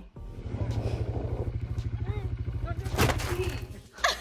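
A small off-road vehicle's engine running with a rapid, even pulse, with one loud sharp burst about three seconds in.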